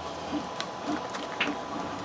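Quiet handling of a small clear plastic case and its foam packing as it is opened, with a couple of light clicks.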